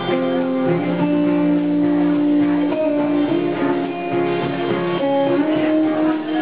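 Live band playing a slow rock song, with long held notes that change every second or so.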